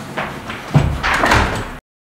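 A wooden door being closed: several knocks and rattles, with a heavy thud about three-quarters of a second in. The sound cuts off abruptly near the end.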